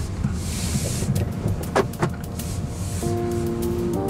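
Low cabin rumble of a Mercedes EQC electric SUV pulling away, with a few short clicks. About three seconds in, background music with long held tones comes in over it.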